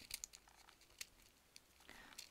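Near silence, with a few faint ticks as hands handle sequined trim and paper, once about a quarter second in and again at about one second.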